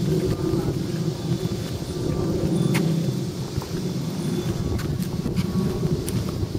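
Steady low rumble, with a few brief faint clicks about three and five seconds in.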